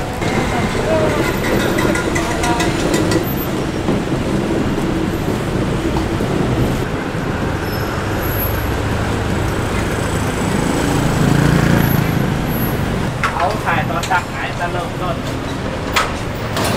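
Busy city-street traffic: cars and other motor vehicles passing close by, with engine and tyre noise, one vehicle louder as it passes about two-thirds of the way through. People talk nearby.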